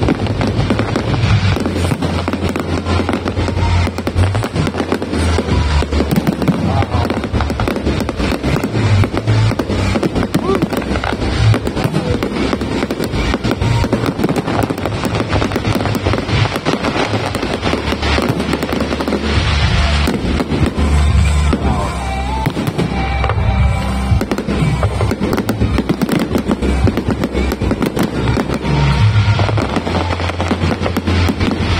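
Fireworks display in full flow: aerial shells bursting one after another with a dense, continuous crackle and deep booms, with no let-up.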